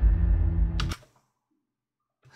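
Low, steady droning background sound from the played video, with a few faint held tones and a short click, cutting off suddenly about a second in as the video is paused.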